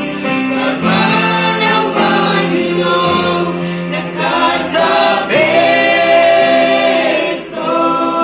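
Mixed group of men and women singing a gospel praise song together in long, held phrases, accompanied by a Yamaha PSR-E473 keyboard and an acoustic guitar.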